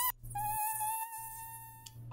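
Mosquito's high-pitched whining buzz, steady with a slight waver, breaking off for a moment just after the start and resuming a little lower until just before the end.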